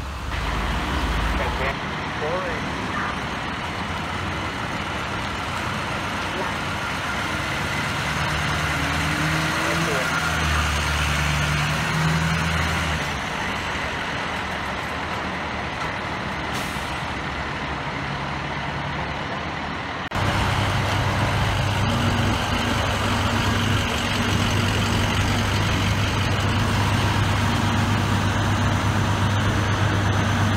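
Heavy fire-apparatus diesel engines running in street traffic. After a sudden cut about two-thirds of the way in, a heavy truck engine idles steadily.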